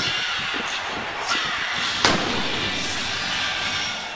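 Arena crowd cheering after a goal, with the Blue Jackets' goal cannon firing one loud boom about two seconds in.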